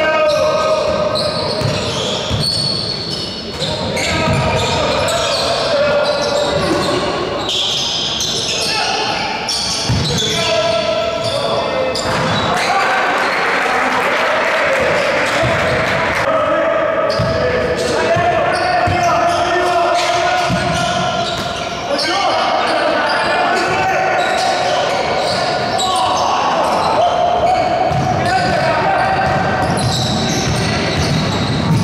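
Basketball being dribbled and bouncing on an indoor court during live play, with shouting voices, all echoing in a large gym.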